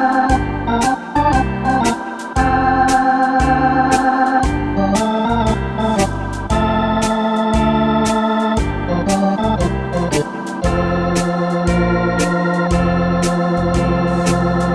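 Yamaha arranger keyboard playing a Hammond-style organ voice: sustained chords and a melody over the keyboard's swing auto-accompaniment, with a pulsing bass line and regular cymbal strokes.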